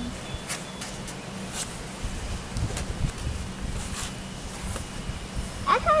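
Outdoor ambience: an uneven low rumble of wind on the microphone, with a few soft ticks and rustles scattered through it and a faint steady hum underneath. A voice starts right at the end.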